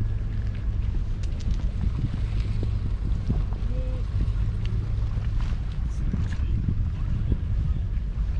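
Wind buffeting the camera microphone, a steady low rumble, with scattered faint clicks and a brief short tone about four seconds in.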